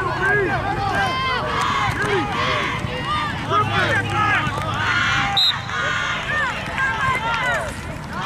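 Many voices yelling at once from the sidelines, a continuous tangle of overlapping shouts during a youth football play.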